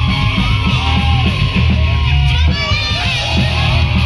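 Loud live rock band with electric guitar, bass guitar and drums keeping a steady beat, and voices yelling over the music.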